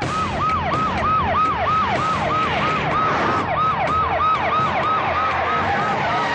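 Vehicle siren wailing in quick repeated falling sweeps, about three to four a second, over the noise of cars driving.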